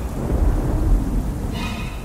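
Deep, rolling thunder-like rumble over sparse dark music. A pitched tone with overtones comes in near the end.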